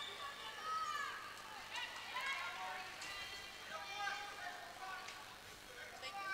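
Faint voices of players and teammates calling and chattering across an indoor sports hall, in short scattered calls.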